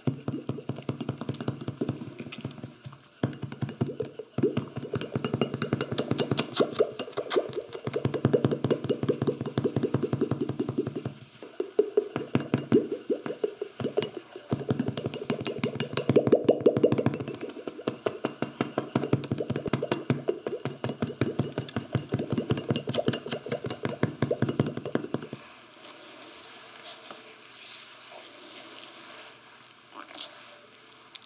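Rapid, rhythmic percussive massage strokes tapping on the body, many strikes a second in runs with short breaks, stopping about 25 seconds in.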